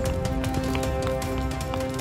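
Background music: held, slowly changing notes over a low rumble and quick, irregular ticking percussion.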